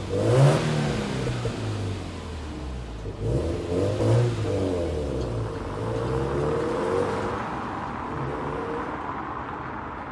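Subaru WRX STI's turbocharged EJ20 flat-four pulling away and accelerating off down the street. The engine note rises and falls a few times, then fades into the distance.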